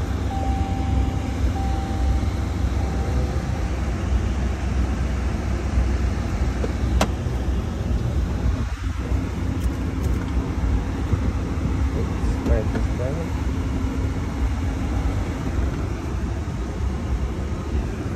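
Steady low rumble in a pickup truck's cab, with a single sharp click about seven seconds in.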